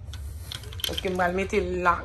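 A woman's voice making two drawn-out sounds in the second half, over a steady low hum.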